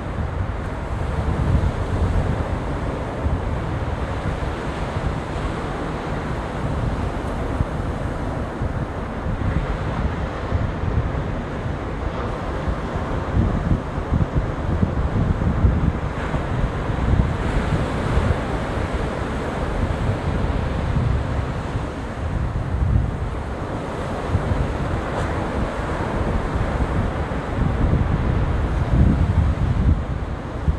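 Ocean surf washing onto a sandy beach, a continuous rushing noise, with wind buffeting the microphone in low, uneven gusts.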